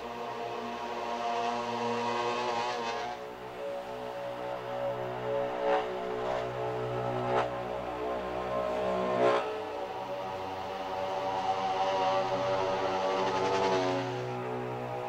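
Ambient music: layered, sustained drone tones that shift in texture about three seconds in, with three short sharp accents near the middle.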